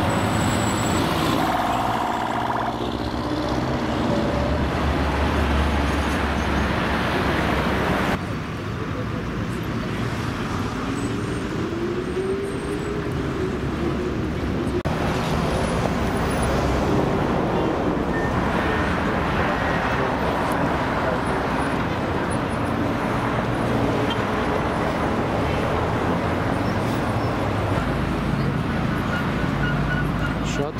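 City street traffic: engines and tyres of passing cars and a minibus, with a heavy low rumble of a vehicle close by during the first several seconds. The background changes abruptly twice, about 8 and 15 seconds in, then settles into steady traffic noise.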